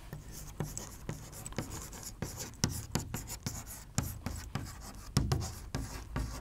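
Chalk writing on a chalkboard: an irregular run of quick taps and short scratches as letters are stroked out, with a duller thump about five seconds in.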